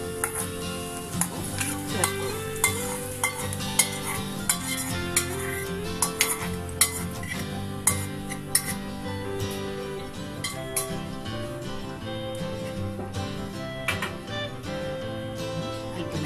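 Metal spoon clinking and scraping against a small steel pan as a fried tempering is stirred and scraped out onto a curry, in sharp, irregular clinks, over instrumental background music.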